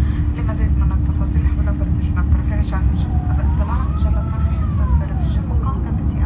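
Steady low cabin rumble of an Airbus A350-941 climbing out after takeoff, from its two Rolls-Royce Trent XWB-84 engines and the airflow, heard from inside the cabin over the wing, with a steady hum underneath. Voices are heard over it, and near the middle a tone rises and then slides down over about two seconds.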